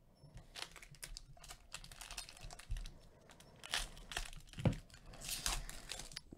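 Foil trading-card pack wrappers crinkling and tearing as hands open packs and handle the cards, an irregular run of small crackles and rustles. One sharper knock a little over halfway through.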